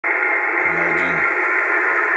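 Amateur radio transceiver's speaker giving a loud, steady hiss of received noise, cut off sharply above and below by the receiver's narrow audio passband. It is the noise interference that drowns out all but the loudest stations.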